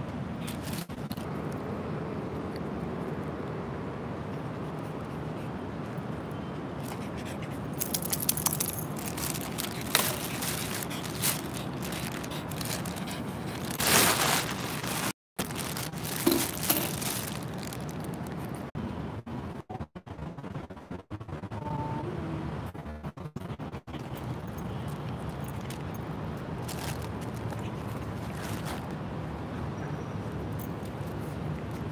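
Steady outdoor background noise with several brief scraping and rustling bursts as the phone is handled and swung about. The loudest bursts fall around the middle.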